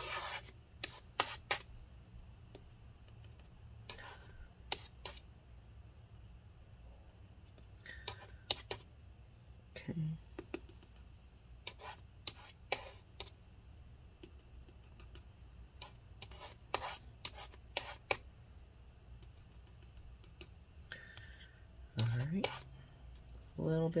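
A plastic scraper scraping alcohol-softened battery adhesive off a laptop's aluminium case. The short scrapes come in clusters a few seconds apart.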